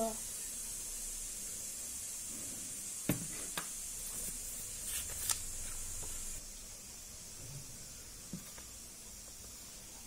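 Quiet handling of a glue bottle and paper on a table: a few light clicks and taps over a steady high hiss, which drops away about six seconds in.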